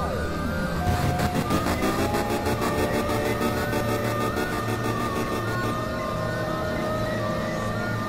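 Experimental electronic synthesizer music: sustained drones with a tone sweeping sharply down in pitch at the start, then a fast, even pulsing under wavering higher tones from about a second in.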